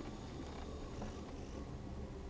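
Faint, steady low rumble inside a lorry cab.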